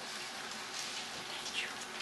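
Faint rustling of Bible pages being turned by hand, a few short paper swishes over a steady hiss.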